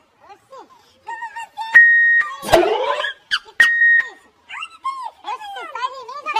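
Two electronic beeps, each about half a second long and about two seconds apart, with a loud sharp hit between them, over quieter high-pitched voices.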